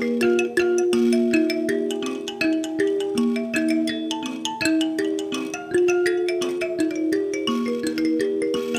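Mbira (thumb piano) playing an instrumental piece: plucked metal keys ring in a steady, repeating melodic pattern, each note starting with a sharp click.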